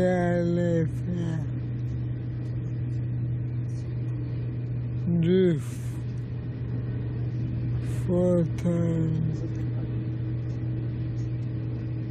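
Steady low hum of a train heard inside the passenger car, under a man's few short, slow spoken phrases.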